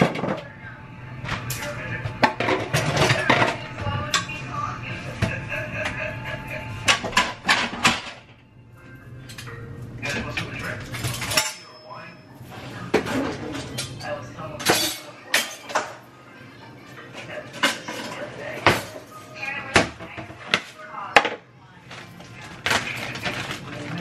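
Ceramic plates and dishes clinking and clattering as they are handled and put away, in a string of sharp knocks, over background music.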